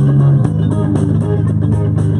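Live rock band playing: electric guitars and bass guitar over a drum kit, with a steady beat on the cymbals and a strong, sustained bass line.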